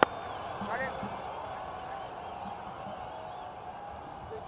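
A single sharp crack of a cricket bat striking the ball right at the start, then a steady stadium crowd background with a few faint distant calls about a second in.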